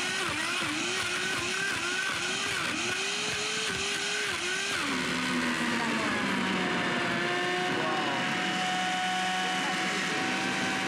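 A 1,400-watt, two-and-a-quarter-horsepower blender running at full speed, crushing frozen strawberries with skim milk into sorbet. For about the first five seconds the motor's pitch keeps dipping and recovering, about twice a second, as the frozen fruit loads the blades. It then drops to a lower, steady pitch as the mix turns to thick sorbet.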